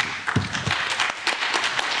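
Audience applauding: many hands clapping, starting suddenly and keeping up steadily.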